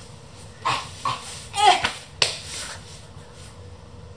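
A person in a hinged knee brace rolling over on a floor: breathy effort sounds and rustling, with a short voiced effort sound just before two seconds in and a sharp knock just after.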